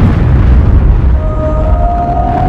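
A loud boom sound effect rumbling on with deep low energy, with a held musical note coming in about a second in.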